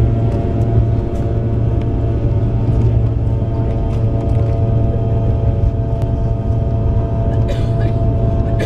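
Airliner engines at takeoff power heard inside the passenger cabin during the takeoff roll: a loud steady rumble with a steady whine over it. A brief hiss comes near the end.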